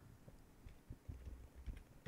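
Faint computer keyboard typing and clicks, with a few soft low thumps, as a stock ticker symbol is keyed in.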